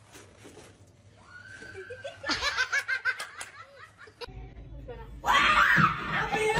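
A short high-pitched cry, then a person laughing in quick, rhythmic bursts. Near the end a much louder voice breaks in suddenly.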